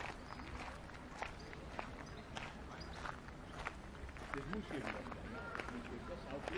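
Footsteps of someone walking at an even pace, about two steps a second, with faint voices of other people coming in about four seconds in.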